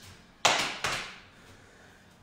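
A person breathing out hard twice in quick succession, the first breath louder, from the effort of lunge exercises.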